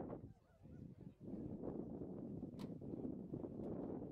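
Breeze buffeting the microphone: a low, rushing rumble that drops away briefly near the start, then returns.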